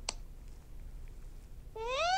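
A short click at the start, then a faint hum, then near the end a high-pitched, meow-like cry that rises in pitch and then holds.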